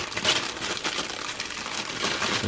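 Clear plastic bag around a model kit's parts tree crinkling as it is handled, a dense run of small crackles throughout.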